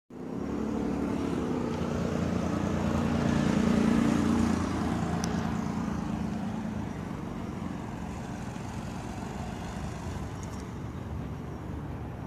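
A car's engine running close by with a low hum, loudest about four seconds in and then fading away, leaving a steady, quieter traffic hum.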